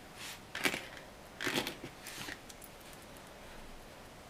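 A few short, faint rustles and scratches of hands handling a darning needle and yarn against a cloth doll's crocheted yarn cap, the last of them a little past two seconds in.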